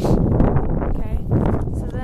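Wind buffeting the camera's microphone in a loud, uneven rumble, with a faint voice near the end.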